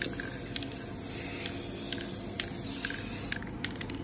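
Aerosol spray-paint can spraying in a steady hiss, held close to the canvas, stopping a little over three seconds in, followed by a few light clicks.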